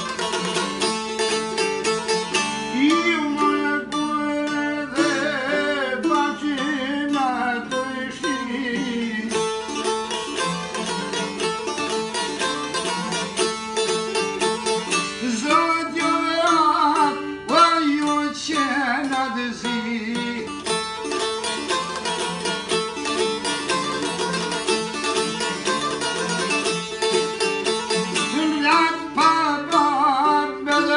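Long-necked plucked folk lute played continuously in Albanian folk style, with a man singing long, wavering phrases over it about three seconds in, again from about fifteen to twenty seconds, and near the end.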